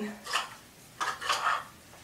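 A few brief clicks and rattles from a Bio Ionic StyleWinder rotating-barrel curling iron as its barrel is turned to wind a section of hair.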